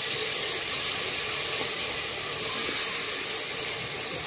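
Onion-tomato masala sizzling steadily in hot oil in a pressure-cooker pot, a wooden spatula stirring through it.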